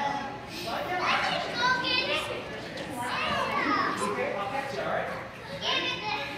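Children playing and calling out, with several high voices overlapping throughout.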